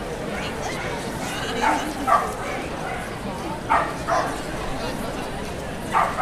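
A dog barking: two quick pairs of short, sharp barks, the first about one and a half seconds in and the second about two seconds later, over a steady background hum of voices.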